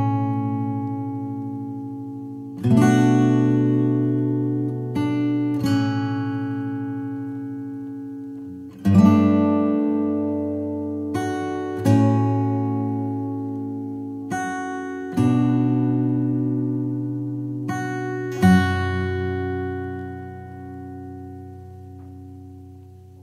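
Slow acoustic guitar music: a chord struck every two to three seconds and left to ring out and fade, with the last chord dying away near the end.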